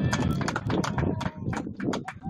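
Spectators clapping: quick, sharp individual handclaps, several a second, over crowd murmur and a few shouted voices.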